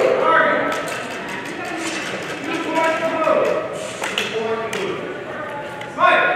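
Indistinct voices talking in a large hall, with a few faint clicks.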